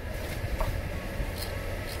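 Steady low rumble inside a parked car's cabin, with no voices.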